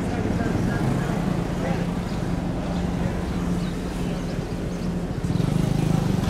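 A vehicle engine idling steadily with a low hum that turns into a fast, even throb near the end.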